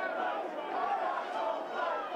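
Football crowd in the stands: a steady mass of many voices, with a few faint raised voices standing out.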